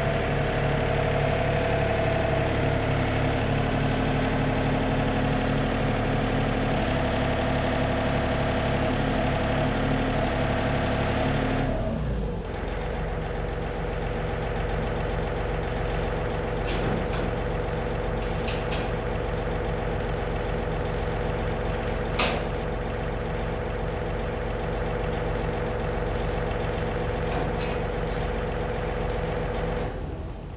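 John Deere tractor engine running steadily, then settling to a lower, quieter idle about twelve seconds in. In the second half a few sharp metallic clanks come from the trailer tongue as the trailer is unhooked from the three-point trailer mover.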